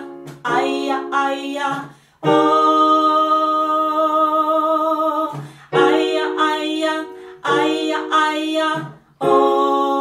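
A woman singing the melody "aia aia aia ooh" over sustained chords on an electric keyboard. Each phrase is a few short syllables followed by a long held "ooh", and the phrase comes round twice.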